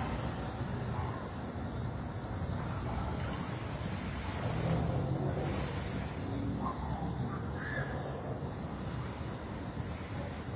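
Steady low rumble of outdoor background noise with no distinct event standing out.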